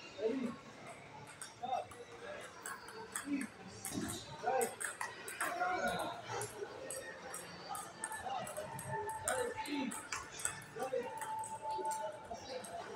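Table tennis rally: the ball clicking off the paddles and the table many times in quick succession, over background voices.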